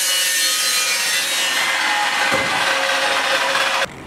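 Evolution chop saw cutting: a loud, steady screech with several ringing tones, some of which drop a little in pitch partway through. It cuts off abruptly near the end.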